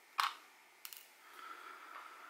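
A sharp click about a quarter of a second in, then a fainter tick just before the middle: small watch parts and screws handled with tweezers on the bench.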